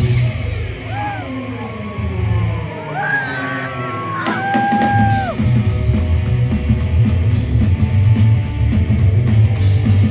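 Psychobilly band playing live with upright bass, electric guitar and drums. In the first few seconds the low end drops back and long held notes bend up and down above it; the full band comes back in at full strength about five seconds in.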